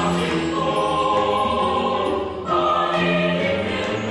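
Mixed choir singing a Korean sacred anthem in held chords, with piano accompaniment. There is a brief gap between phrases about two and a half seconds in.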